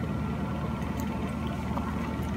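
A steady low hum of indoor background noise, even in level, with no voices.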